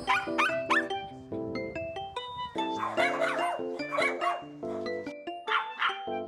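A small dog barking in short, high yips: three quick ones at the start, more in the middle and just before the end, over light background music.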